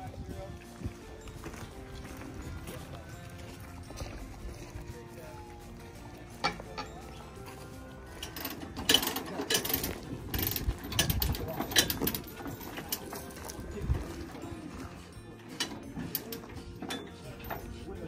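Background voices of a crew talking outdoors, then a run of sharp clicks and clanks for several seconds in the middle, around a bulldozer on its lowboy trailer.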